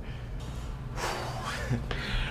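A person's breath, heard as a breathy rush of air lasting about a second from halfway in, over a low steady room hum.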